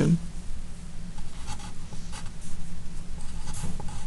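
Handwriting on a sheet of paper: a few short, faint scratchy strokes of the writing tip, over a steady low hum.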